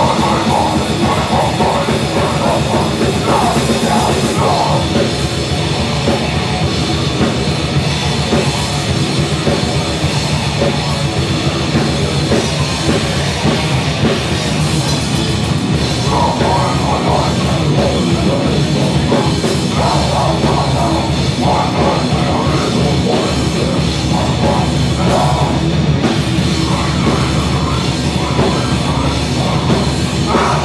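A metal band playing live and loud: distorted electric guitar and a drum kit pounding away without a break.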